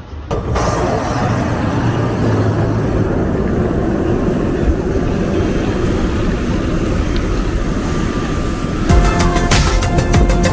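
Loud, steady outdoor airport apron noise, a rush with a low rumble and a faint steady whine, coming in abruptly just after the start. Music takes over near the end.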